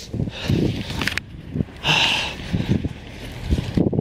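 Wind buffeting the microphone, with rustling camera-handling noise coming in irregular bursts and a short hiss about two seconds in.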